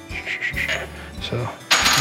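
Light metallic clinks as the loosened transmission main shaft nut is spun off by hand and lifted from a Harley-Davidson's splined main shaft.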